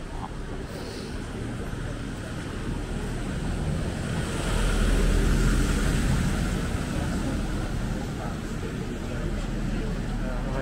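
Outdoor street noise on a wet high street: a continuous rush with a low rumble that swells to its loudest around five seconds in and then eases off.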